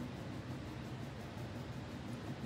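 Quiet, steady room noise: an even hiss with a faint low hum, and no distinct sounds standing out.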